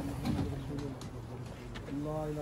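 Low men's voices murmuring in a small crowd, faint and indistinct.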